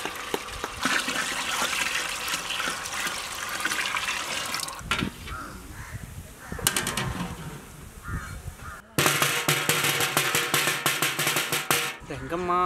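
Water poured from a steel bucket into a large metal cooking pot, splashing steadily for about five seconds, followed by a few short metal clanks. About three seconds before the end, music cuts in suddenly.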